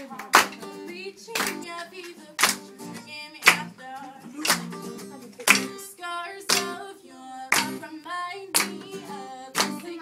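A woman singing to acoustic guitar, with hands clapping along on the beat about once a second.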